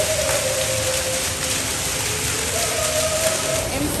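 Themed cave water effect: a jet of water spraying up and splashing back down in a steady, heavy rush, like a downpour.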